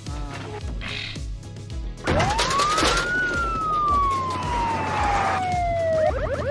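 A siren-like whistling tone about two seconds in, rising quickly and then sliding slowly down over about three seconds, with a rushing noise beneath it, over background music.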